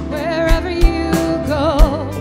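Live rock band playing: drum kit beats, with a held melody note with vibrato twice, once near the start and again in the second half.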